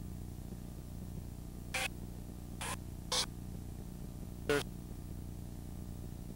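Basketball game ambience in a gymnasium over a steady low electrical hum and hiss, with four short, sharp sounds about two, two and a half, three and four and a half seconds in; the last one is the loudest.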